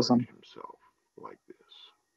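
A man's voice finishing a spoken phrase, then a pause filled only with faint, soft murmurs and breaths.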